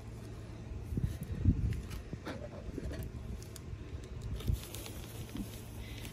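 Pine shavings rustling in a plastic zip bag and being sprinkled into a bee smoker, with a few faint rustles and soft knocks over a low steady rumble.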